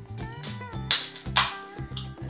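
Background music with a steady bass line, over which a carbonated Fanta soft drink is opened by hand, giving short sharp hisses about a second in.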